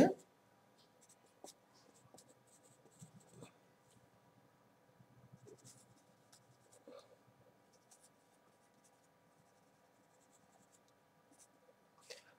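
Marker pen writing on a whiteboard: faint, scattered scratching strokes and light ticks as letters are drawn.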